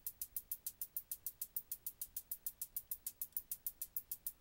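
Synthesized hi-hats from a Reason Subtractor synth, looping as a fast, even run of bright ticks. A Matrix curve is modulating the Subtractor's filter frequency and resonance, so their tone shifts slightly.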